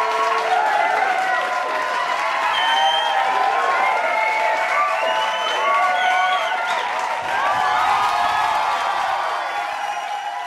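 A crowd of children cheering and shouting at once, many high voices overlapping.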